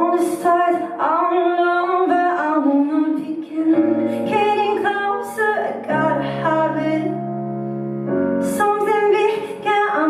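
A woman singing a ballad while accompanying herself on an electric keyboard set to a piano sound. The held piano chords shift in the bass about every two seconds under her vocal line.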